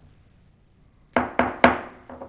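Three quick raps of a wooden gavel, about a quarter second apart and each ringing briefly in the room, calling the meeting to order.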